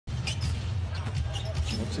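Basketball dribbled on a hardwood court, a series of short bounces over the low, steady hum of an arena crowd.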